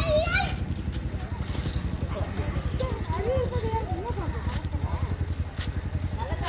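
A rapid, steady low throbbing like an engine idling, under people talking in the background, with a few faint knocks of bricks being shifted.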